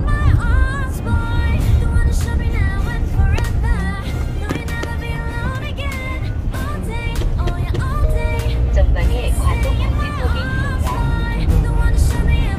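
A song with a singing voice plays throughout, over the steady low rumble of a car driving on the road.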